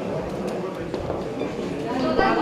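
Indistinct chatter of many people talking at once in a hall, with a few faint knocks.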